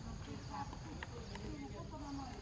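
Faint, indistinct chatter of voices in short broken snatches over a steady low rumble, with two brief sharp clicks about a second in.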